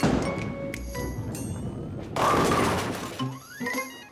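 Bowling ball released and rolling down the lane, then a crash of bowling pins falling about two seconds in that lasts about a second. Light background music plays under it, with a few musical notes near the end.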